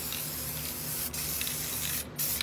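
Aerosol spray-paint can spraying in a steady hiss, dusting paint around a stencil onto a leather jacket.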